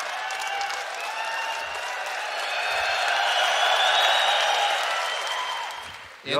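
A large audience applauding, the clapping swelling to its loudest about four seconds in and then dying away near the end.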